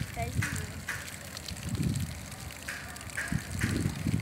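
Wind rumbling irregularly on a phone microphone carried on a moving bicycle.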